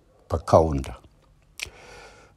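A man's voice says one short syllable into a microphone. A second later comes a sharp mouth click, then a soft intake of breath.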